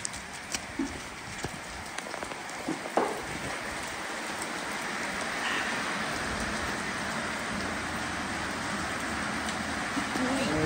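Heavy rain pouring down steadily, growing a little heavier about halfway through. There are a few sharp knocks in the first three seconds, the loudest about three seconds in.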